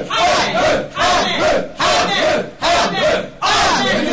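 A woman praying aloud, loud and fervent, in quick runs of short shouted syllables with a short break for breath about every second.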